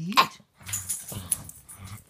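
A black pug making short throaty dog noises while scuffling about on bedding.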